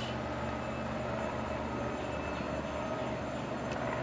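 Steady low mechanical hum of distant machinery, unchanging throughout, with a faint higher tone running along with it.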